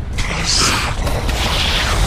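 Sound effects of explosions: a continuous low rumble with hissing noise swells, the loudest about half a second in and near the end.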